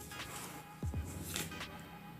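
Faint background music.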